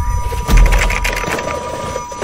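Sound effects of an animated end card: a deep boom about half a second in, followed by a quick run of clicks and pops.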